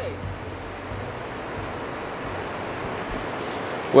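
Steady rush of a rocky river's current running over boulders and riffles.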